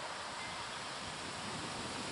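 Steady, even hiss of outdoor background noise on a camcorder's built-in microphone, with no distinct event.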